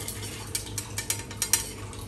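Puris frying in hot oil in a steel kadai: irregular sharp crackling pops from the oil, while a slotted steel skimmer lifts them out.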